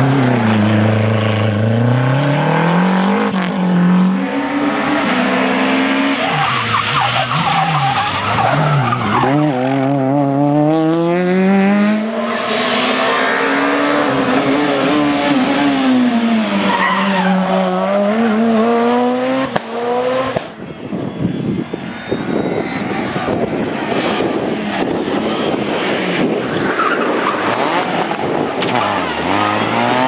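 Rally cars passing one after another on tarmac stages, engines revved hard, the pitch repeatedly climbing and dropping through gear changes and lifts, with tyre squeal as they slide through the bends. The sound changes abruptly about two-thirds of the way in as the shot switches to another car.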